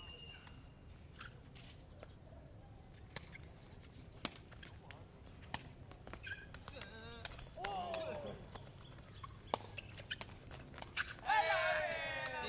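Sepak takraw ball kicked back and forth: single sharp knocks of the woven plastic ball off players' feet, spaced a second or more apart. Players call out around the middle, and a louder shout comes near the end.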